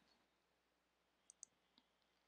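Near silence, broken by two faint, short clicks a little past the middle and a fainter one near the end.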